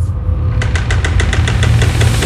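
Horror-trailer sound design: a deep rumbling drone, joined about half a second in by a rapid ticking pulse of about eight ticks a second.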